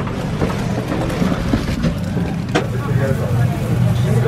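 Busy restaurant ambience: indistinct chatter of many voices over a steady low hum, with a few sharp clicks.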